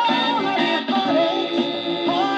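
A 1970s soul 45 playing on a 1950s Dansette Major record player, heard through its built-in speaker: a full band with a wavering, gliding melody line.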